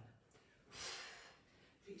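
A woman breathing out hard once, about a second in: a short, airy rush of breath with no voice in it, one of the deep breaths of a cool-down breathing exercise.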